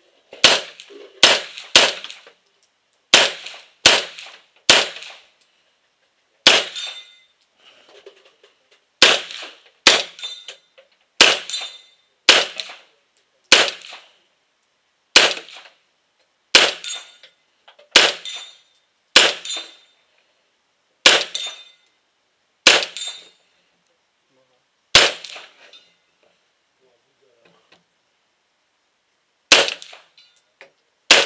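Rifle fired close to the microphone in a string of about twenty single shots. The shots come in quick groups of two or three at first, then a second or two apart, with a pause of about four seconds near the end.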